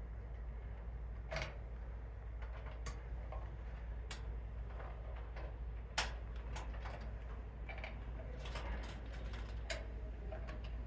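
Scattered small clicks and ticks of wires and twist-on wire nuts being handled against a sheet-metal fluorescent light fixture. The loudest click is about six seconds in, with a quick run of them near the end, over a steady low hum.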